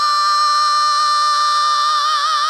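A man's unaccompanied rock singing voice, with no band, holds one long, high belted note that is steady in pitch.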